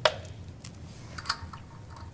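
Air-hose quick-connect fittings clicking and rattling as red air lines are coupled to a pneumatic drive motor: one sharp click at the start, then a few lighter clicks about half a second and a second in.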